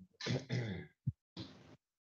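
A person clearing their throat, followed by a short low thump about a second in and a brief breathy hiss.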